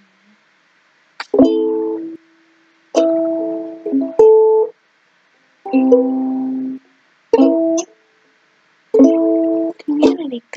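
Ukulele strummed one chord at a time, about six or seven single strums with short gaps between, moving between a few different chords as a short tune is tried out.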